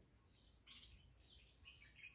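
Near silence, with a few faint high bird chirps in the background.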